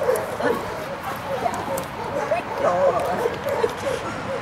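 A young shepherd-mix dog whining in a run of short cries that waver up and down in pitch, repeated over and over.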